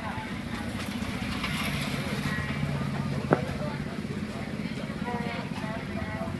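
Street ambience: background voices over a steady low engine hum, with one sharp click a little over three seconds in.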